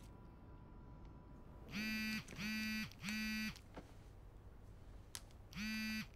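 A mobile phone ringing in short buzzing rings: three in quick succession, each about half a second, then a pause and a fourth near the end.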